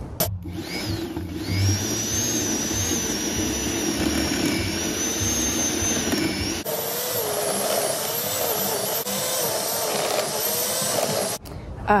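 Corded electric Sun Joe tiller running, its motor whining with a wavering pitch as the tines churn dry soil. About six and a half seconds in, the sound cuts to a second stretch of tilling with a higher whine.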